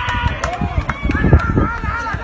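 People's voices, high and wavering, over a run of repeated low thumps.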